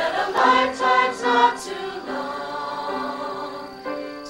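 A group of young women and men singing together in chorus: a few short sung notes, then one long held chord from about two seconds in.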